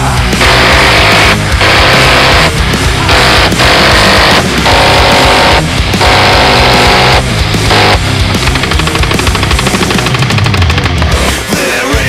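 Several long bursts from a multi-barrel rotary minigun, each about a second long, over loud music. Each burst is one continuous, very fast rattle of shots, and the bursts come about seven times in the first eight seconds. Lighter rapid fire follows until near the end.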